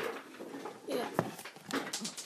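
A voice saying "yeah", over light handling noise of a hand on a Lego coin pusher machine, with one sharp click a little after a second in.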